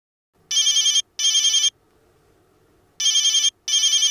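Telephone ringing with a double ring: two short warbling rings, a pause of over a second, then two more.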